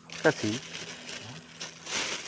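Rustling and rubbing handling noise, a hand moving against the phone that is recording, with a short spoken "huh?" at the start.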